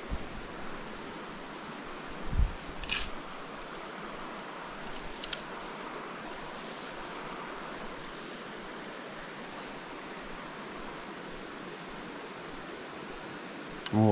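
Steady rush of running stream water, with a short thump about two seconds in and a brief swish just after.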